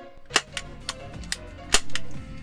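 Parris Golden Ranger lever-action toy cap rifle firing ring caps: a quick run of about five sharp cracks, the loudest about a third of a second in and near the end.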